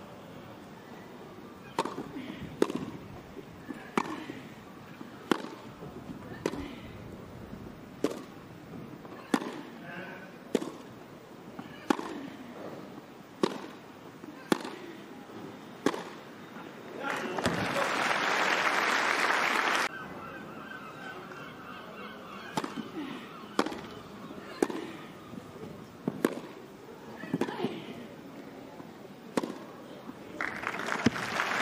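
Tennis rally on a grass court: racquets striking the ball about every second and a half, with players grunting on their shots. About seventeen seconds in there is a burst of applause that cuts off suddenly three seconds later, and then a second rally follows.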